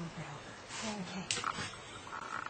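Brief, low human vocal sounds, soft laughter or murmuring, in two short bits, with a short hissy breath-like sound just past halfway.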